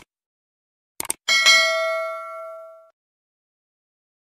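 Subscribe-button sound effect: two quick clicks about a second in, then a bright notification-bell ding that rings and fades out over about a second and a half.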